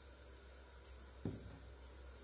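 Near-quiet room tone with a low steady hum and a single soft tap a little past halfway.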